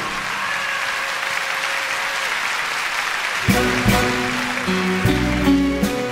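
A concert-hall audience applauding at the end of an enka song. About three and a half seconds in, the stage orchestra starts the next song's introduction, with pitched instruments and sharp percussive strokes.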